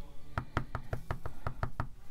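Clear acrylic stamp block tapped down in quick succession, about nine light knocks at roughly six a second.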